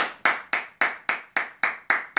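Hands clapping in a steady, even rhythm, about four claps a second.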